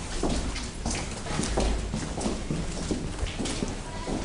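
Footsteps on a hard floor, about two steps a second.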